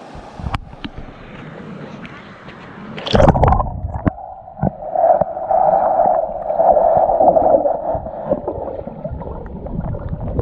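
River water running over shallow stones, then a sudden loud surge about three seconds in, after which the sound turns to the muffled gurgling and rushing of water heard by a camera underwater.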